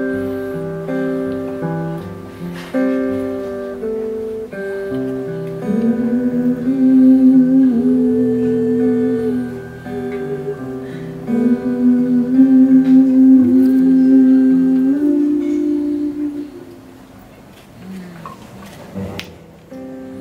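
Live acoustic duo: strummed acoustic guitar under a man and a woman singing a wordless, hummed melody in two parts, the voices sliding between held notes. It drops to a softer passage near the end.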